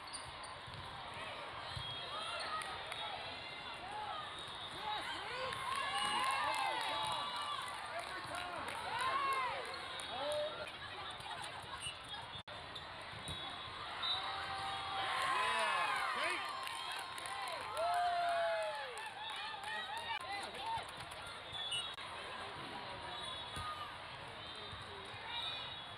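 Indoor volleyball play: athletic shoes squeaking on the sport court in two busy spells, roughly five to eleven seconds in and again from about fourteen to nineteen seconds, with ball hits and voices of players and spectators over the hall's background noise.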